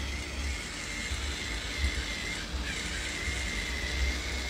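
Handheld electric facial cleansing brush running against the skin: a steady, thin high whine over a soft hiss, with an uneven low rumble underneath.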